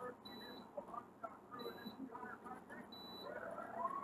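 Faint television audio playing in the room: distant voices, with a short faint high beep repeating about every second and a half.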